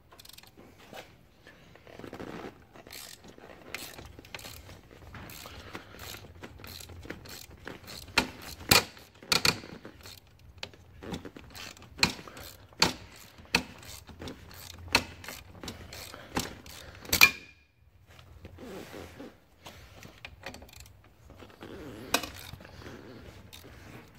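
Hand ratchet clicking as it is worked back and forth on a thread-locked Torx T50 bolt of a seat-belt pretensioner, with short, sharp clicks and knocks a few times a second, the loudest about two-thirds of the way through, then a brief lull.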